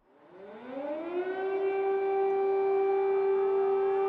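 Air-raid siren sounding a warning, winding up in a rising wail over about the first second and then holding one steady tone.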